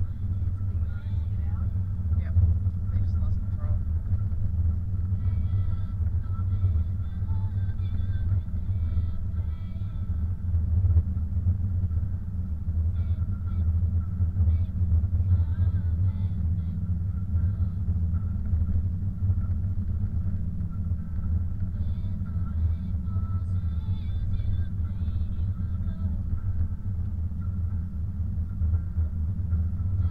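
Car road and engine noise heard from inside the cabin as a steady low rumble while driving on a snow-covered road.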